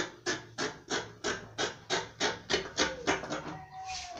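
Fabric scissors snipping through folded fabric in a steady rhythm of about three cuts a second, stopping shortly before the end.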